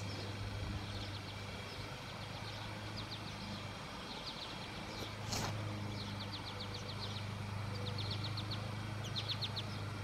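Quiet outdoor ambience: a small bird repeating short, rapid trills of high ticking notes, over a steady low hum. A brief rustle-like burst about halfway through.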